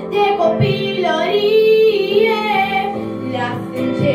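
A young girl singing a pop ballad in Romanian into a handheld microphone over an instrumental backing track, holding one long wavering note from about a second in.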